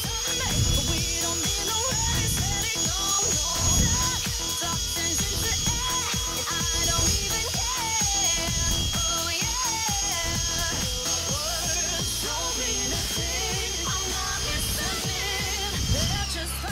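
Black & Decker Dustbuster handheld cordless vacuum running at full speed with a steady high whine while it sucks up flies, winding down at the very end. Background music plays underneath.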